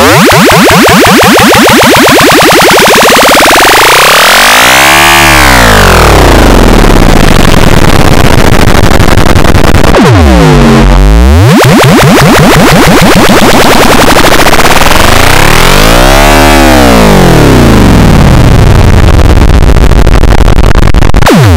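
Samsung phone startup jingle run through heavy distortion effects, loud and clipped, with its pitch sweeping up and back down in two big arcs, peaking about five seconds in and again near the end.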